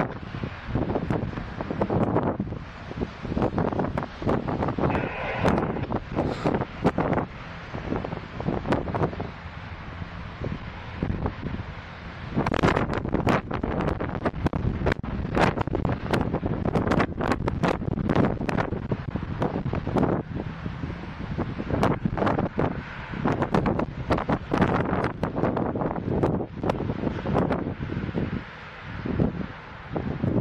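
Strong wind buffeting the microphone in irregular gusts.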